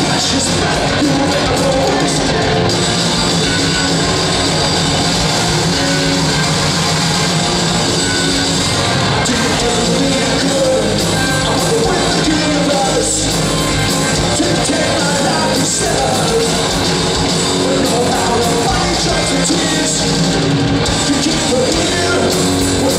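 A punk rock band playing live, loud and without a break: distorted electric guitars through amplifiers, bass and a full drum kit.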